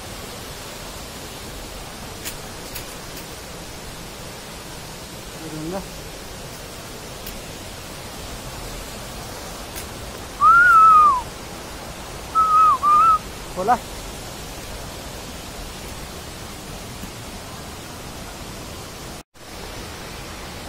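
A person whistling loudly to call someone over: one rising-then-falling whistle about ten seconds in, then a quick pair of whistles about two seconds later. A steady hiss runs underneath.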